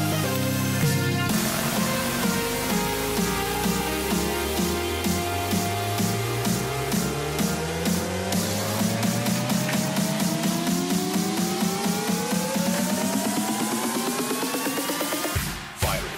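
Electronic dance music played through a DJ controller mix in a build-up. The deep bass cuts out about a second in, then rising synth sweeps climb over a repeating hit that speeds up. The music cuts out briefly near the end, just before the drop.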